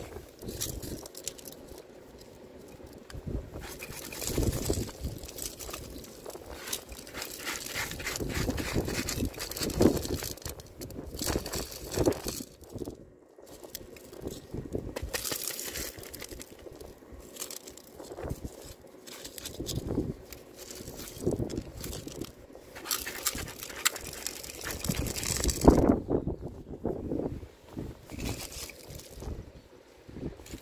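Crushed-stone ballast trickling and rattling out of the open doors of a G-scale model hopper car onto the track, in irregular bursts.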